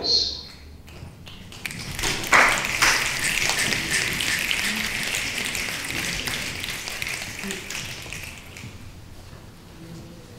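Audience applauding. The clapping starts about two seconds in, is loudest at first and slowly dies away near the end.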